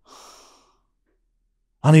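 A man's breath into a close microphone, a soft sigh-like exhale lasting about half a second, then a pause; near the end he starts speaking again.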